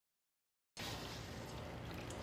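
Total silence, then, about three quarters of a second in, a faint steady trickle of whey running from the squeezed muslin-wrapped paneer through a steel strainer into the bowl below.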